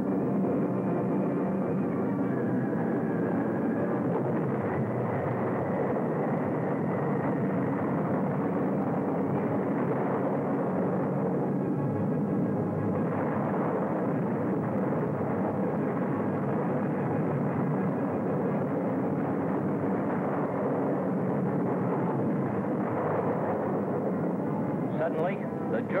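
Steady, dense drone of multi-engine bomber aircraft, dull and lacking highs as on an old film soundtrack, holding an even level throughout.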